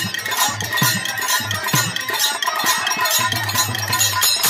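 Instrumental accompaniment of a live Holi folk song: a hand drum beating a steady rhythm of about two strokes a second under bright, continuous jingling metal percussion, with no singing.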